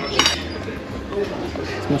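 A single sharp clink of metal cutlery against a plate, with a short high ring, about a quarter second in, over a low murmur of diners' voices.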